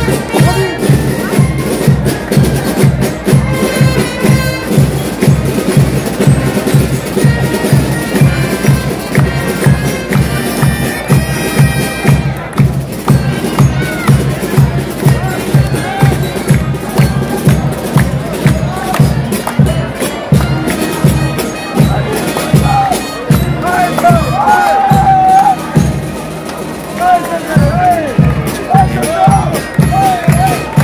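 Live street band music: wind instruments playing over a steady drum beat of about two strokes a second, with crowd voices rising near the end.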